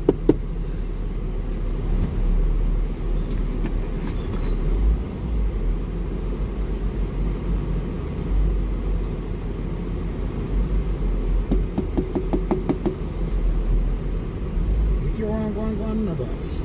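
Car cabin noise picked up by a dashcam while driving slowly: a steady low rumble of engine and tyres. A few sharp clicks come near the start, a quick run of clicks follows about three-quarters of the way through, and a pitched sound begins near the end.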